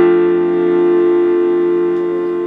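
Keyboard music: one long chord held steady, slowly easing off.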